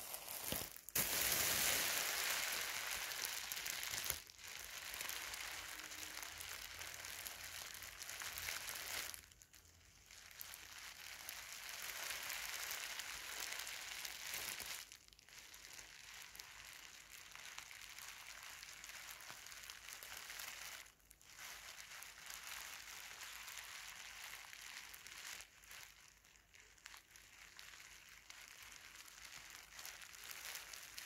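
Thin white bag crinkled and crumpled close to the microphone, a continuous crackling rustle loudest in the first few seconds and broken by brief pauses every five seconds or so.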